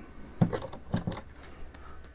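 A few light clicks and taps from equipment and wires being handled on a workbench, the loudest about half a second in and another about a second in.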